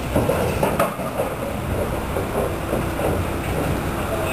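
Longhorn cattle moving inside a wooden-slatted stock trailer, with hooves and bodies clattering and knocking against the boards over a steady low rumble.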